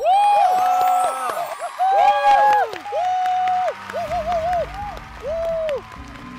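Several people whooping and cheering excitedly in a run of long calls that rise and fall in pitch, the loudest right at the start and about two seconds in. Applause and crowd noise grow beneath them from about four seconds in.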